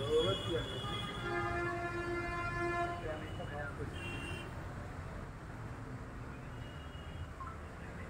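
A single long, steady horn note lasting about two seconds, starting about a second in, over a low background murmur with faint voices.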